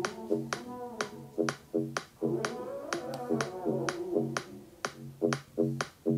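Music played through a JBL Go 3 compact Bluetooth speaker: a pop track with a sharp snap-like click on the beat, about three a second, over a sustained melody.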